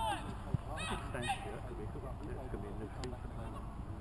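Men's voices on a football touchline: a short exclaimed "oh" about a second in, with bits of laughter and chatter around it.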